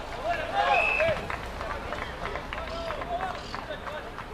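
Several voices shouting and calling out during open rugby play, loudest in the first second, with short light taps underneath.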